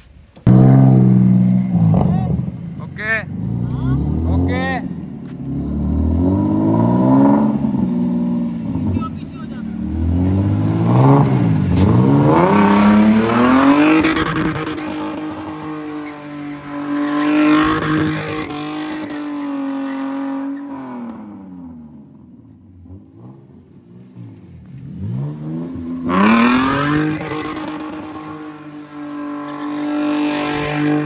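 Mazda RX-8's rotary engine revving hard over and over as the car spins donuts, its pitch sweeping up and down and held high for long stretches. About three-quarters of the way through the revs fall away, then climb again.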